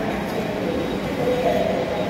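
Metro train running through the station, a steady rumble with a faintly wavering mid-pitched drone.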